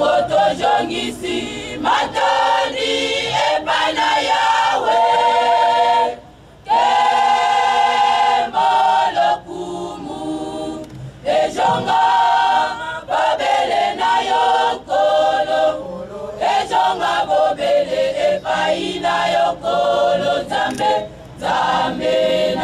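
A women's choir singing in held, sustained phrases, with a short break about six seconds in.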